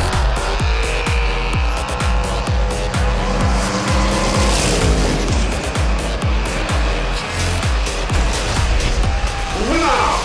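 Dubbed-in race-car sound effects: engines revving and tyres squealing, with background music.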